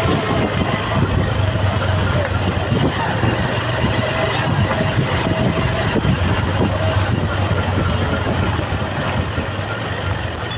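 Engines and tyre noise of police vehicles moving in a convoy, a steady low hum, with indistinct voices mixed in.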